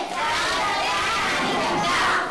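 A group of children calling out birthday wishes together, a continuous chorus of many overlapping voices.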